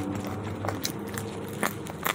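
Close-miked chewing of a mouthful of fries, with a few sharp, crisp crackles.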